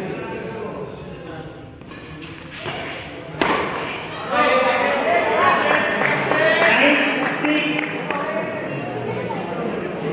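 Men's voices talking and calling out, with a single sharp smack about three and a half seconds in. The voices get louder from about four seconds in and stay loud until about eight seconds.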